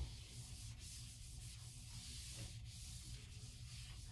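Handheld whiteboard eraser wiping across a whiteboard: a steady, soft rubbing hiss.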